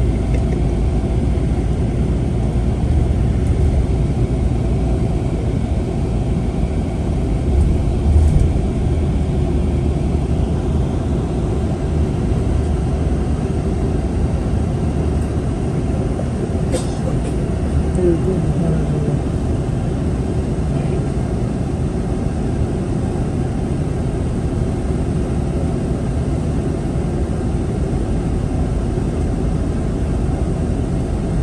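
Steady low rumble of a bus's engine and tyres on the road, heard from inside the passenger cabin while it drives along. A single brief click comes a little past halfway.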